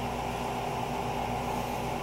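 A steady machine hum in a small room: a low drone with several fixed tones over an even hiss, unchanging throughout.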